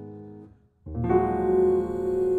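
Grand piano: a held chord fades away to a brief silence just past halfway, then a new chord is struck and rings on.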